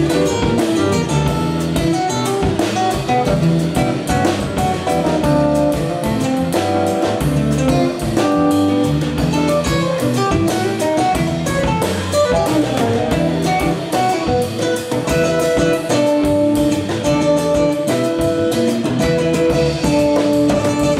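Spanish guitar playing a melodic line with a jazz drum kit and bass, the drums keeping time mostly on the cymbals.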